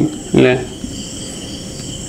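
A short spoken syllable, then a steady high-pitched chirring in the background, typical of crickets.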